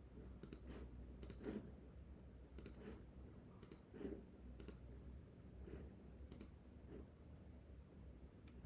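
Computer clicks, about seven short sharp ones at irregular intervals, as answers are picked and the next question is opened in an on-screen test.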